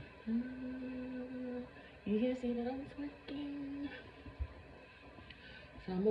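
A woman humming three long held notes with short pauses between them. The second note rises in pitch. A quieter stretch follows.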